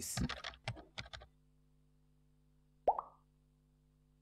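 The tail end of a voiceover, then a single short pop sound effect with a quick upward pitch flick about three seconds in, the kind laid under an animated on-screen graphic. A very faint steady hum lies underneath.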